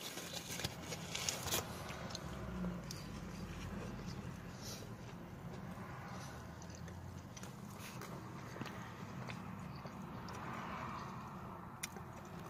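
Faint chewing and mouth sounds of a person eating a chicken sandwich, with a few small clicks in the first second or so, over a low steady hum inside a car.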